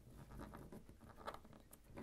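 Faint rustling and rubbing of origami paper as a triangle is folded down and the crease pressed flat with fingers, a few soft scattered ticks.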